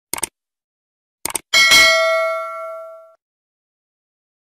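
Subscribe-button animation sound effect: a quick double click, another double click about a second later, then a bright bell ding that rings out for about a second and a half.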